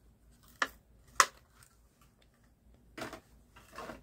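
Small hard objects being handled: two sharp clicks about half a second apart near the start, then two softer rattling knocks about three seconds in.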